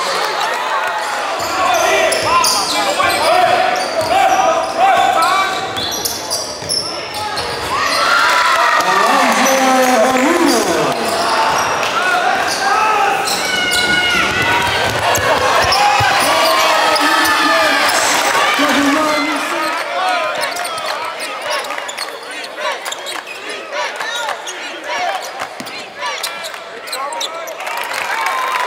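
Live basketball game sound in a gym: a basketball bouncing on a hardwood court, with players and spectators talking and calling out in the hall.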